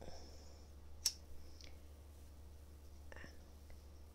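Quiet room with a steady low hum. A single sharp click comes about a second in, a fainter one follows shortly after, and there are soft breathy or mouth noises, with a brief one around three seconds in.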